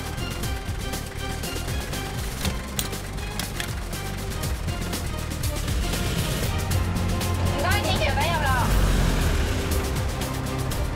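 Background music with a steady low vehicle rumble beneath it, heaviest in the second half, and a brief voice about eight seconds in.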